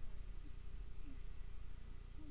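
Quiet room tone: a steady low electrical hum under faint hiss, with a few faint, brief pitched sounds.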